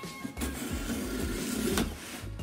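A knife blade slicing along the packing tape on a cardboard box: one continuous cut that starts sharply about half a second in and stops just before the end.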